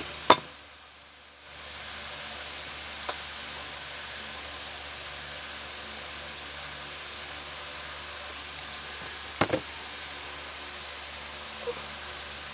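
Steady background hiss with a few sharp clicks and knocks from a plastic squeeze bottle being handled close to the microphone: a loud click just after the start, a quick double click about nine and a half seconds in, and a couple of fainter ones.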